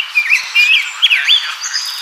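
Male rose-breasted grosbeak singing: a warbled phrase of quick rising and falling whistled notes that ends about one and a half seconds in.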